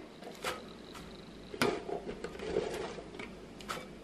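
Chopped romaine lettuce dropped by hand into a glass bowl: faint rustling of leaves with a few light clicks.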